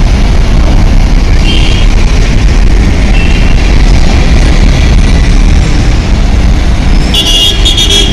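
Heavy road traffic, trucks and cars passing at low speed, a loud steady low rumble. Short high-pitched horn toots sound twice early on, and a louder, sharper toot near the end.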